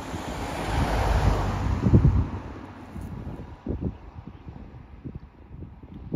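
Wind buffeting the microphone in gusts, loudest about one to two seconds in and then easing off.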